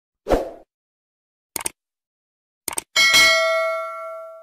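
Subscribe-button animation sound effect: a short low thump, two quick clicks, another quick click or two, then a bell ding with several ringing pitches that fades out over about a second and a half. The ding is the loudest sound.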